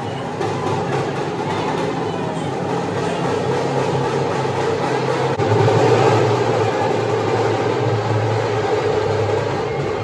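Loud, steady din of a large packed crowd, swelling a little about six seconds in.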